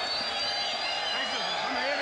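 A corner man talking close to his boxer over steady crowd noise in the arena.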